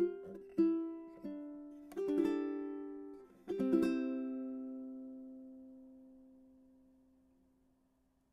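Closing notes of a gentle song on a plucked string instrument: a few single plucked notes over the first two seconds or so, then a last chord about three and a half seconds in that rings out and slowly dies away.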